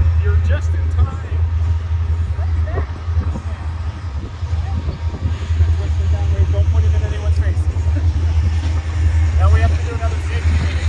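Faint, indistinct chatter from a small group of people over a strong, steady low rumble.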